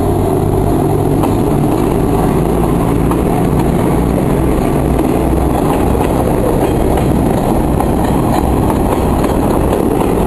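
DSG-class diesel shunting locomotive passing close by, its engine running steadily with a deep hum and rumble. Near the end the container wagons roll past behind it, with faint clicks from the wheels.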